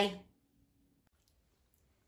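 The tail end of a woman saying "bye", then near silence with a few faint clicks.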